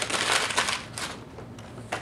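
A sheet of paper being crumpled into a ball by hand, loud crackling for about the first second, then thinning to a few softer crinkles.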